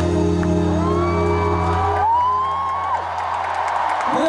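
Live band holding the song's final sustained chord, which cuts off about two seconds in, then a stadium crowd cheering with a long, high whoop.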